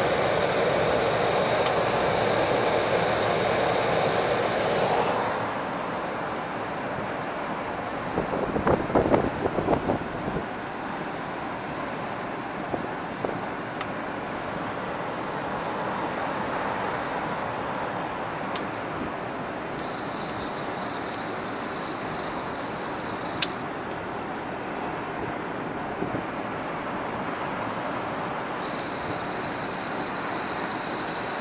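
Steady rushing noise inside a car cabin, the sound of the vehicle running or its blower fan, louder for the first few seconds. A brief cluster of knocks and handling rustles comes about eight to ten seconds in, and a single click follows later.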